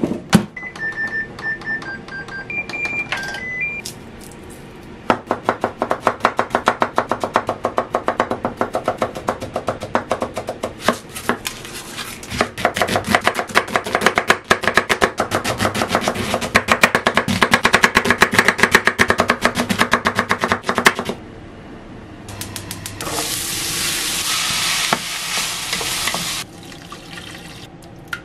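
A Hitachi MRO-S1KS microwave oven's keypad beeping, a run of short electronic beeps at a few different pitches. Then a kitchen knife chopping an onion on a wooden cutting board, rapid strokes several times a second for about fifteen seconds. Near the end a few seconds of frying sizzle.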